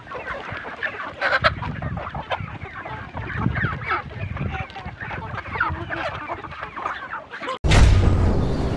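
A flock of village chickens clucking and calling over one another as they crowd around their feed. The flock sound cuts off abruptly near the end, and a louder, different sound starts just after.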